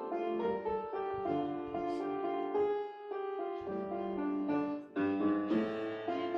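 Piano playing a hymn tune in chords, changing notes every fraction of a second.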